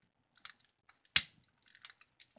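A few light clicks and one sharp, louder click about a second in, from handling a long-nosed utility lighter.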